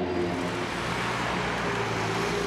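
Street traffic: a car engine running steadily, with tyre and traffic hiss that grows stronger in the middle.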